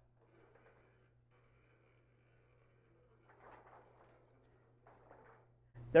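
Faint sliding, scraping sounds from the manual louver mechanism of a Mirador 111DA aluminum pergola as its louvers are swung shut, in two short spells about three and five seconds in, over a low steady hum.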